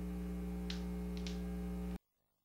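Steady electrical mains hum on a VHS camcorder's audio track, with three faint short ticks, one a little after half a second in and two close together just past a second in.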